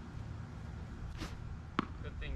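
A single sharp tap near the end, a tennis ball bounced on the hard court before a serve, over a low steady outdoor rumble.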